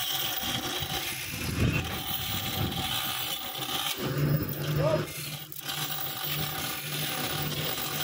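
A high steady hiss for the first half, then the steady, slightly pulsing hum of a crane hoist or winch motor starting about four seconds in, with a lattice steel crane section hanging on the hook.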